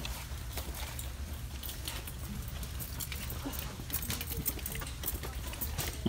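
Clear plastic blister packaging of a carded action figure crinkling and clicking irregularly as it is handled close to the microphone, over a steady low hum.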